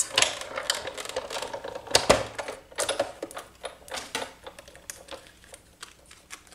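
Sizzix Big Shot hand-crank die-cutting machine running a die and gold foil through its rollers, cranked through more than once so the detailed frame cuts cleanly. The sound is irregular clicks and knocks from the handle and plates, the loudest about two seconds in.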